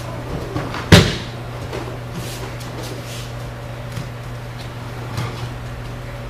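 A body hitting padded dojo mats in an aikido breakfall: one loud thud about a second in. Lighter thumps of feet and bodies on the mat follow, over a steady low hum.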